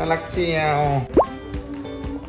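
A quick rising 'bloop' pop sound effect, one short upward-sliding tone that is the loudest moment, laid over light background music just after a man's brief remark.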